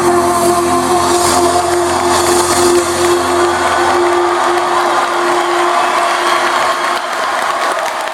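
The song ends on one long held note that fades out about six seconds in, while the audience applauds and cheers.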